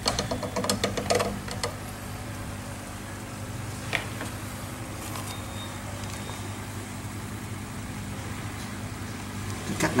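Aquarium air pump humming steadily while it drives an air stone in the breeding tank. A few light clicks and knocks come in the first second and a half, with one more about four seconds in, as the net and basket are handled.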